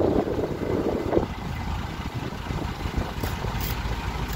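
Low, steady rumble of an idling boat engine, with a few short, sharp clicks near the end.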